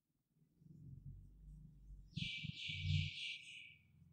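Marker pen writing on a whiteboard: a faint hiss of quick, repeated strokes about two seconds in, lasting under two seconds, with soft low bumps of the hand against the board around it.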